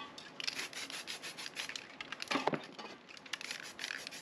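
Handling noise from spray-painting work: quick runs of rubbing and scraping strokes, with a knock a little past halfway.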